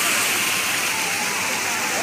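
Water spilling in thin sheets over the ledges of a stone-wall fountain: a steady rush, with people's voices in the background.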